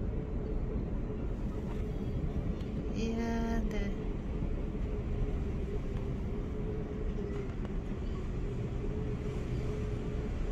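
Steady mechanical hum and low rumble inside a moving Ferris wheel gondola. About three seconds in, a brief held pitched tone sounds for under a second.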